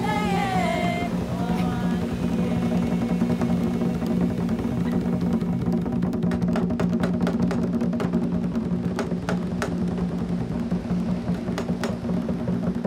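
Haitian Vodou drum ensemble of manman, segon and boula drums with an ogan iron bell playing a steady rhythm. A sung vocal line trails off about a second in, and sharp strikes come thicker in the second half.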